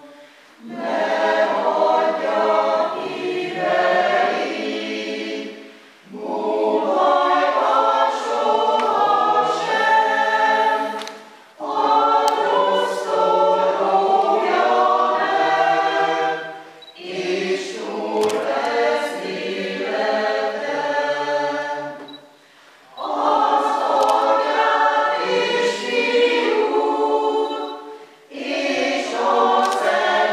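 Mixed church choir of women's and men's voices singing a Hungarian hymn, in phrases of about five or six seconds with brief pauses for breath between them.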